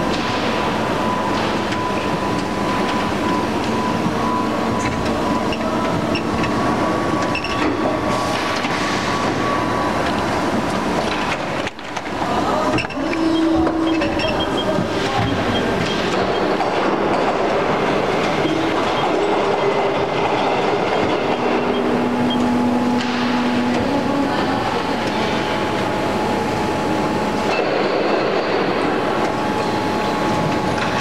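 Injection moulding machine running with a steady, loud mechanical noise and several held whining tones that come and go, with a brief drop in loudness about twelve seconds in.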